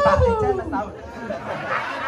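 A voice holding one long high note that arches up and then falls away, fading about a second in, followed by talking and chatter.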